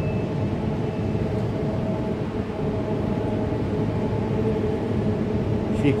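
Steady hum of a stationary double-deck passenger train, its on-board equipment running with a couple of faint steady tones over an even noise.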